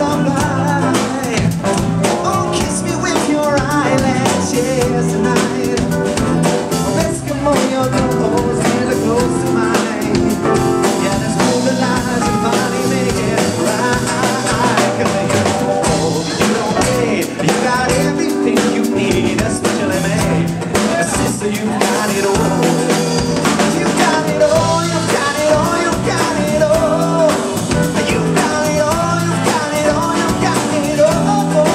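Live band playing a song on acoustic guitar, electric bass and drum kit, with a steady drum beat throughout.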